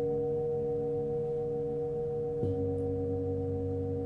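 Several Tibetan singing bowls ring together in a steady, layered hum. About two and a half seconds in, another bowl is struck softly with a felt mallet and adds a deeper tone that keeps ringing.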